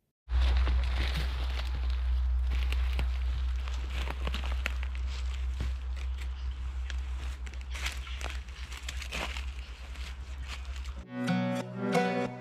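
Footsteps crunching irregularly through dry leaf litter on a forest floor, over a steady low rumble. Background music comes in near the end.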